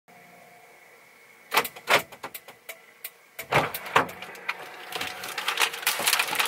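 Knocks and thumps of things being handled inside a vehicle cabin, over a faint steady hum. Near the end a bag starts to rustle and crinkle.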